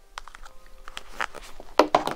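Faint handling noises, scattered small clicks and rustles as a toothpaste tube and toothbrush are picked up from a table, with a brief vocal sound near the end.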